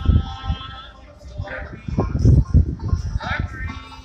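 Bluegrass street musicians heard from nearby: a high, wavering melody line over repeated low thumps.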